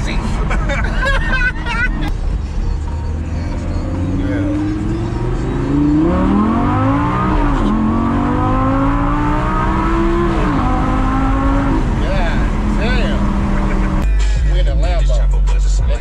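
Lamborghini Gallardo's V10 engine heard from inside the cabin, pulling hard under acceleration: it climbs in pitch, drops at a gear change about seven and a half seconds in, climbs again, then eases off around ten seconds in. A passenger laughs at the start.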